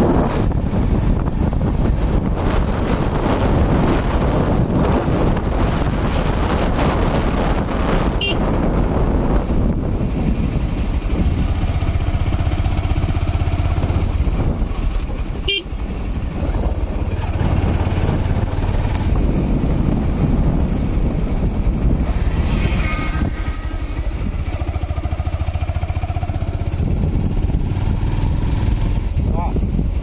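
Wind rushing over the microphone while riding on a motorbike, with the engine and road noise running steadily underneath.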